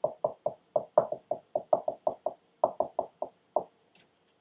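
Dry-erase marker writing on a whiteboard: a quick, uneven run of short taps and squeaks, about five a second, that stops shortly before the end.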